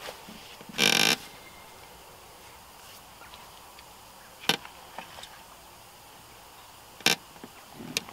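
Handling noises from an angler's tackle and bait: a short rustle about a second in, then a couple of sharp clicks, against a faint steady outdoor background.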